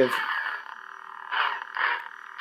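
Obi-Wan Kenobi Blade Builders electronic toy lightsaber humming faintly from its speaker, with two short swing sounds about a second and a half in. Its motion sensor is set off by small movements of the hilt, which the owner finds way too sensitive.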